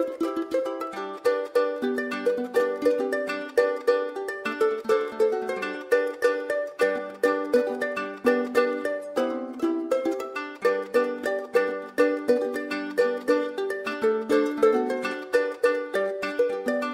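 A traditional Ugandan plucked string instrument playing a fast, repeating melody of short, quickly decaying notes, with no singing.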